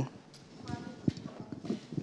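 A lull between speakers: low room tone with a few faint knocks and a faint, brief murmur of a voice in the middle.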